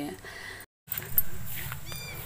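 A short high-pitched animal call with a bright, arched tone, heard once near the end over low steady outdoor rumble, after the sound cuts out briefly.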